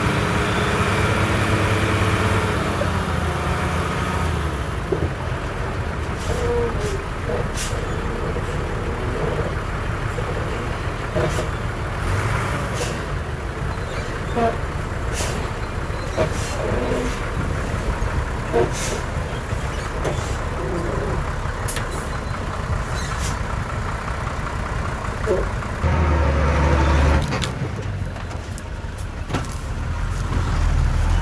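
Heavy diesel engines of a dump truck and a Komatsu D68E crawler dozer running, with scattered sharp knocks and clanks. Near the end the engine sound swells briefly as the truck's bed tips up to dump its load of soil.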